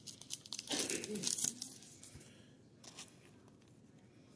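Thin plastic card sleeve crinkling and rustling as a trading card is slid into it, for about two seconds, then near quiet with a few light ticks.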